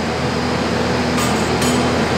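Mensch sand bedding truck running as it spreads sand along the stall beds, a steady mechanical drone with two short high metallic clinks about a second in.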